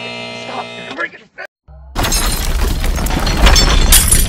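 A steady held musical chord stops about a second in. After a short gap, a loud crash with shattering and breaking sounds starts about two seconds in and keeps going: an added explosion-and-shatter sound effect.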